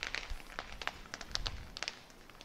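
Rustling and crackling of conifer branches and needles close to the microphone, a run of small irregular clicks and snaps.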